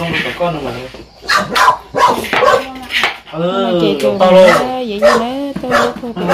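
People talking, several voices, with a few short, sharp sounds among them.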